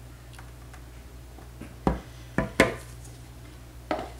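Plastic measuring pitcher and mixing container set down on a granite countertop: four sharp knocks, one just under two seconds in, two close together half a second later, and one near the end.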